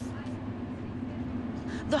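Steady low engine rumble with a constant hum, starting abruptly as the sound cuts in.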